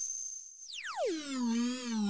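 Ableton Live Wavetable synth note (Airlite pad preset) bent in pitch by MPE note expression: a thin, very high tone holds, then slides steeply down about a second in and settles into a low, richer note with a slight wobble.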